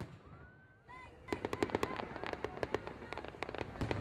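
Fireworks: a brief whistle in the first second, then from a little over a second in, a fast, dense crackle of sharp pops and bangs.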